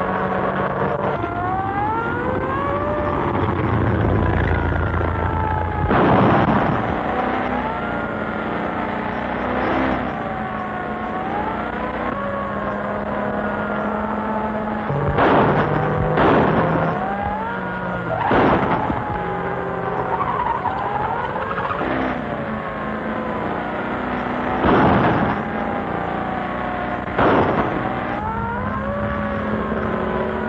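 Car chase sound from an early-1930s film soundtrack: car engines running while sirens wail up and down over and over. About six sharp bangs fall at uneven intervals through it.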